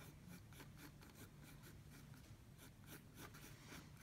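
Faint scratching of a pencil on sketchbook paper, drawing quick short strokes several times a second.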